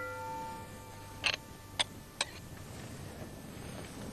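A struck metal pot rings out and fades away, then three light clinks of kitchenware follow about half a second apart as parsley is tipped from a small bowl into the mashed potatoes.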